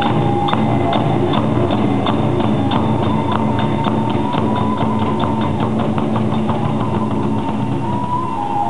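Kagura hayashi accompaniment starts suddenly: a bamboo transverse flute holds a high note while drum strokes and ringing hand-cymbal clashes mark a beat that quickens.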